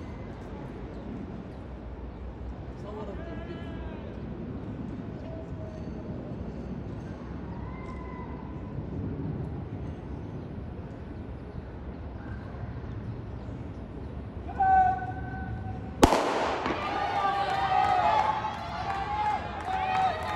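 Open-air stadium murmur with faint distant voices, then a single sharp starting-gun shot about four seconds before the end that starts a 400 m sprint. Loud voices calling out follow the shot.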